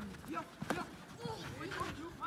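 A football being kicked on the pitch: a sharp thud a little under a second in and a fainter touch near the end, among the distant shouts of young players.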